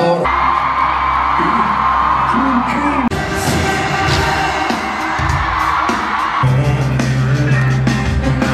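Amplified live concert music with singing echoing around a large arena, in a run of short clips that cut abruptly from one song to another about three seconds in and again after six seconds.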